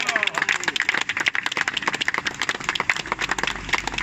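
A small crowd clapping and cheering. A car passes close by near the end, its low rumble rising.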